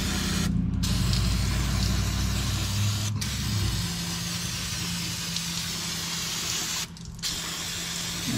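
Aerosol brake cleaner spraying in long steady hisses into an open rear differential housing, flushing the ring gear and case. It is broken by short pauses about half a second in, just after three seconds and near seven seconds. A low steady hum runs underneath.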